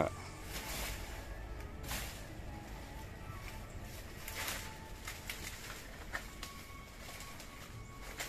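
Dry banana leaves rustling and crackling in a few short, scattered bouts as they are pulled away from a banana plant's trunk.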